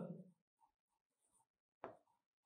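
Faint scratching of a stylus writing on an interactive whiteboard, in short strokes, with a sharper click near the end.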